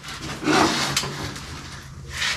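A wood stove being shifted on a metal hand truck onto a steel box: rubbing and scraping handling noise with light rattles, loudest about half a second in.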